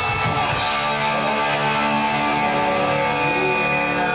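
Live rock band playing electric guitars and drums. About half a second in the drums drop out, leaving the electric guitars ringing on held chords.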